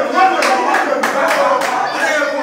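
About six sharp hand claps in quick succession, over the overlapping voices of onlookers.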